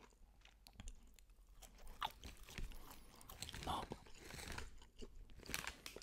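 Quiet, close-miked chewing of dry kabanos sausage: scattered soft crunches and mouth sounds at irregular intervals.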